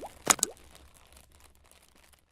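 Animated-logo sound effects: two quick pops in the first half second, each with a short rising pitch sweep, then a faint tail fading away.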